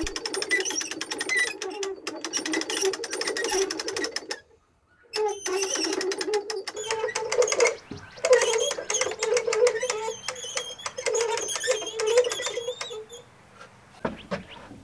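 Hand-cranked two-speed winch clicking rapidly as its ratchet turns while hoisting a log. The clicking stops for under a second about four seconds in, then runs on until near the end.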